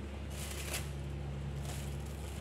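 Soft rustling from a handheld phone being moved, in two short patches, over a steady low hum.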